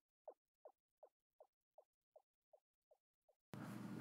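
A shouted word repeating as a fading echo from a delay effect, about three repeats a second, each fainter until they die away. A faint hiss comes in near the end.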